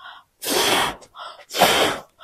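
Person blowing up a rubber balloon by mouth: two forceful breaths blown into it, about a second apart, with short quick inhales between.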